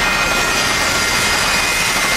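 Steady whooshing, jet-like sound effect for a magically levitating water pot, with a few faint high tones held over it.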